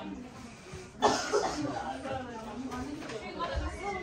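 People talking. The speech starts about a second in after a quieter moment; the words are not made out.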